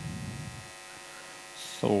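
Steady electrical mains hum with many buzzing overtones in the live sound system, with a short spoken word cutting in near the end.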